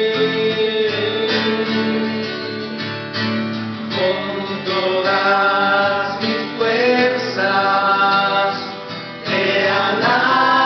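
Acoustic guitar strummed to accompany a song, with singing voices; the music drops briefly and comes back louder with singing just before the end.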